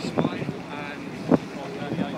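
Wind buffeting the microphone on a ship's open deck, with people's voices chatting around it and one short louder sound about a second and a half in.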